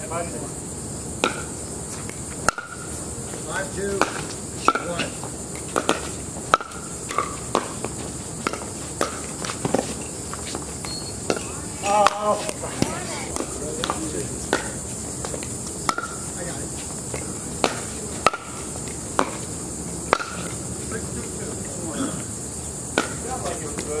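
Pickleball paddles striking a plastic ball in a doubles rally: sharp, hard pops at irregular intervals, roughly one a second, over a steady high-pitched chirring in the background.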